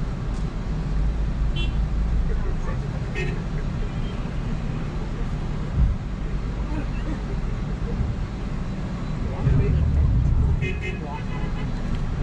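Engine and road rumble of a moving bus heard from inside the cabin, with a single knock about halfway through and a louder surge for about a second near the end.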